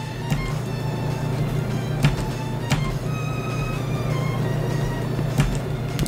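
Background music with held tones over a steady low bass note, and a few brief clicks.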